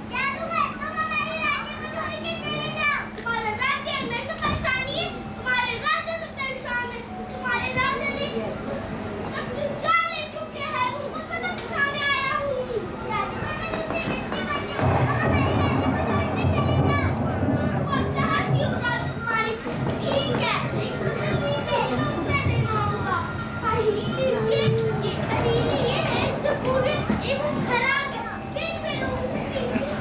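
Children's voices speaking dialogue on stage. A steady low hum sits under the first half, and a fuller, lower sound joins about halfway through.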